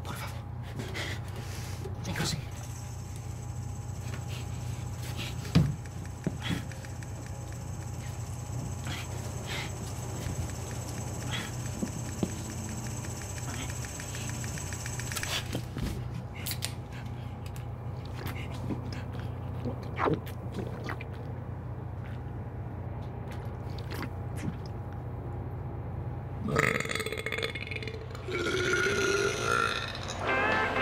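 Burping from men drinking beer, over a steady low rumble inside a moving truck trailer, with scattered small knocks and clicks.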